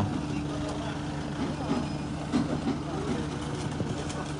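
A car engine idling with a steady low hum, under faint murmuring voices of people nearby.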